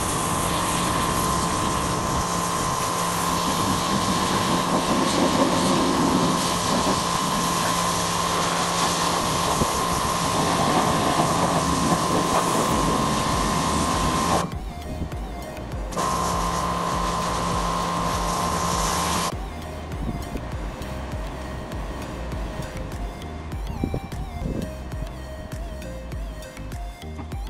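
Pressure washer running: a steady motor whine under the hiss of the spray. It stops for a second and a half about 14 seconds in, runs again, then cuts off about 19 seconds in, leaving background music.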